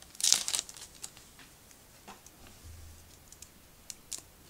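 A trading-card pack wrapper being torn open, with one loud rip about a quarter second in, followed by faint crinkling and rustling.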